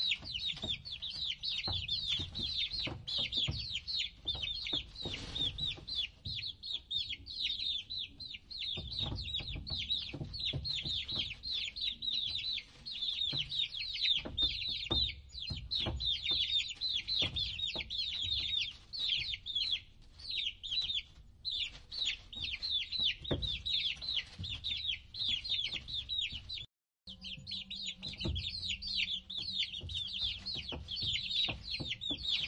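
A box full of young domestic chicks peeping without pause, many short high calls overlapping, with soft low knocks underneath. The sound cuts out for a moment near the end.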